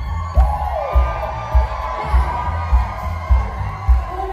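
Live soul band playing in a theatre, a steady kick drum beat a little under two beats a second under sustained melody notes, with the audience cheering over it.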